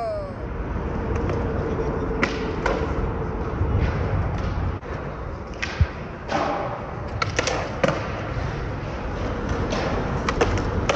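Skateboard wheels rolling on concrete, with a series of sharp clacks and knocks of the board being popped and landed.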